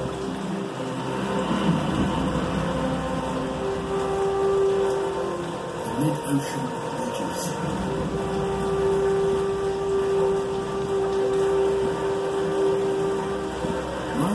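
A television documentary's soundtrack playing in the room: background music with long held notes, and a brief snatch of a narrator's voice about six seconds in.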